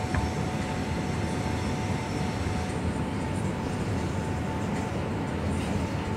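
Steady low rumble of outdoor ambient noise with a faint constant hum through it, typical of air-conditioning plant and city traffic.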